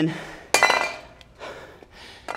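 A water bottle kicked over onto a tiled floor: a sharp clatter about half a second in that rings briefly, followed by a few small knocks.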